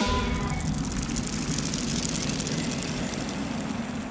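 A sound-design rumble under a TV channel's logo animation: a deep, steady rushing roar, like a passing jet, that slowly fades. A few fading musical tones carry over in the first half second.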